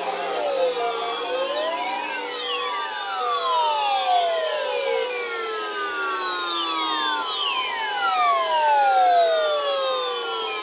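Hiss of static from a roomful of weather radios picking up a NOAA Weather Radio station that has dropped off the air. The hiss is crossed by many overlapping whooshing sweeps that fall in pitch every second or two.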